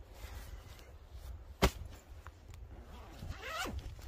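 Zip on a fabric hammock carry bag being pulled open near the end, a short rising rasp. A single sharp click about a second and a half in.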